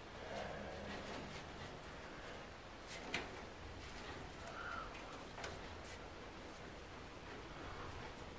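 Faint handling of a nylon bag being spread out on a heat press platen: soft rustling with a few light taps, over low room noise.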